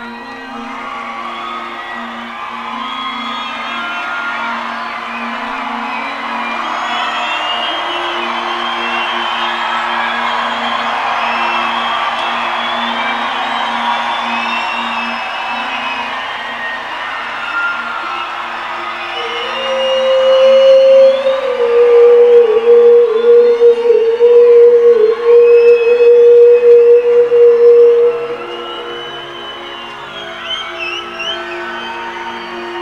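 Live rock concert in an arena: a low held chord under a crowd cheering and whooping. About 19 seconds in, a loud, slightly wavering held note comes in over it and lasts about nine seconds before dropping away.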